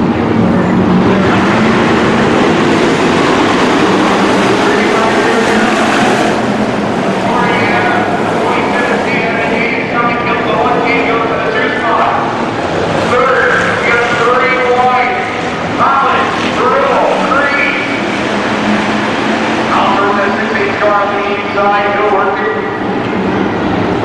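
A pack of dirt-track hobby stock race cars running hard around the oval, their engines loud for the first several seconds. From about seven seconds in, a public-address announcer calling the race is heard over the continuing engine noise.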